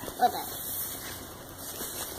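Large plastic bag rustling as it is handled, a steady soft crinkly noise, with a brief child's voice just after the start.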